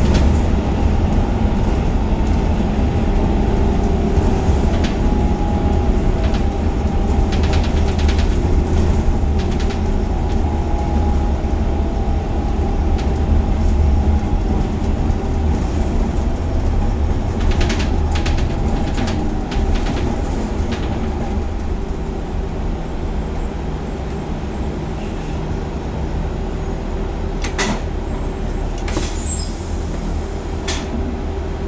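Interior sound of a Gillig Advantage low-floor transit bus under way: steady engine and road noise with a deep low rumble. The rumble eases off about two-thirds of the way through as the bus slows in traffic, and a few short rattles come near the end.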